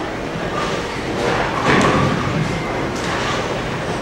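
Bowling alley background noise: a steady rumble with thuds and clatter from balls and pins, a louder burst of clatter about halfway through, and distant voices.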